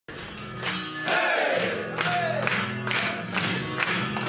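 A group of rugby league players singing their team victory song together, with sharp rhythmic beats about twice a second; it gets louder about a second in.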